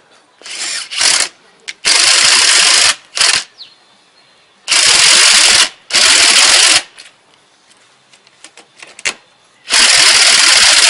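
Makita cordless impact driver hammering as it drives an M10 threaded stud into a wooden beam through a 1/4-inch hex stud adapter. It runs in several bursts of about a second each with short pauses between, and the last burst starts near the end.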